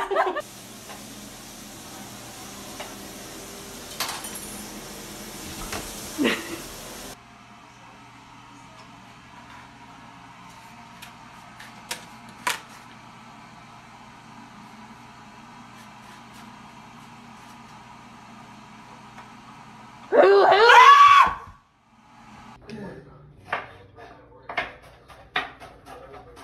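A steady hum in a kitchen, broken at about twenty seconds by a loud shout, then a series of sharp knocks like a knife chopping on a cutting board.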